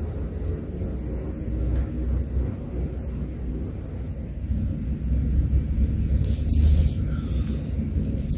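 A steady low rumble of background noise, with faint rustling of Bible pages being turned, including a soft papery sweep about six to seven seconds in.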